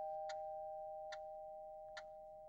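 Two-note doorbell chime ringing out and slowly fading away, with faint ticks a little under once a second beneath it.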